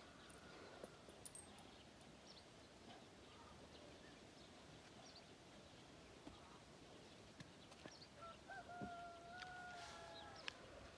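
Near silence: faint rural outdoor ambience with a few light clicks. Near the end comes one faint, long, steady, distant tone.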